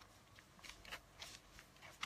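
Plastic sachet pouches crinkling faintly as they are handled, in a handful of short rustles.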